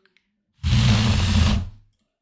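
A LEGO SPIKE four-motor robot's drive motors whirring for about a second as the robot spins through a gyro-controlled turn. The sound starts and stops abruptly.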